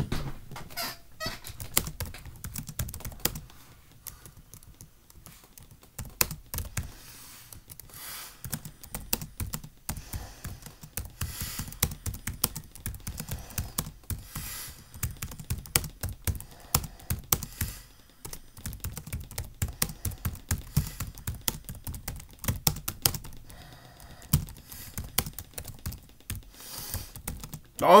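Typing on a computer keyboard: a rapid, irregular run of key clicks, with a short lull a few seconds in.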